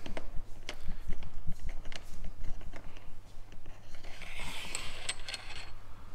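Metal bolt fixings slid by hand along the open-ended channel of a Mercedes-Benz Sprinter's factory roof rail, giving scattered light metallic clicks and scrapes.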